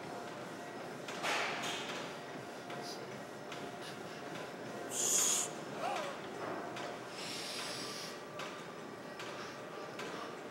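A weightlifter's forceful breaths through the mouth during barbell bench press reps: three hissing exhales, the loudest about halfway through.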